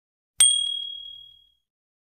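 A notification-bell 'ding' sound effect: one bright bell strike that rings and fades out over about a second.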